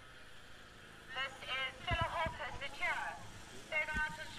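Faint background talk with no words made out, over a low steady hum; the voices start about a second in, with a low thump about two seconds in.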